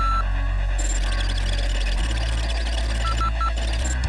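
Title-sequence sound design: a steady low electronic drone with a noisy rushing layer that swells in about a second in, and three quick beeps near the end.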